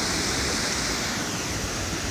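Surf on a sand beach: small waves breaking and washing up the shore in a steady rush, easing slightly in the second half.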